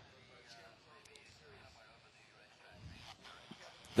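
Faint, distant sonic boom from SpaceShipOne descending, heard as a low thud about three seconds in, with a short sharp crack just after it.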